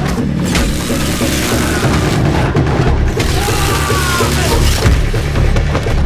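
Dramatic action film score under close-quarters hand-to-hand fighting, with repeated heavy booming hits of blows and bodies striking the walls.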